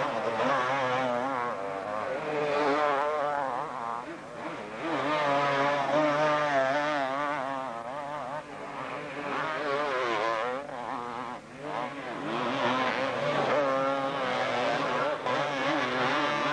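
Two-stroke 250cc motocross bike engines revving hard under load, their pitch wavering up and down as the bikes climb a steep hill and spin their rear wheels in mud.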